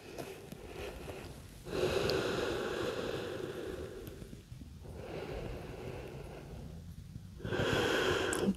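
A woman breathing slowly and deeply while holding a yoga resting pose. There are about three long breaths, each two to three seconds long, with short quiet gaps between them.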